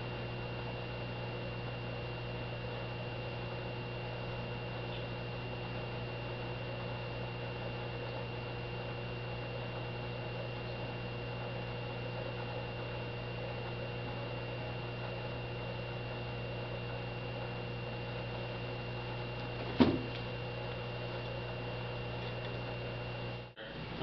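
Steady low electrical hum with a faint high whine above it, and one sharp click about twenty seconds in.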